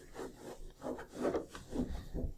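Soft rubbing noises, repeated about two or three times a second.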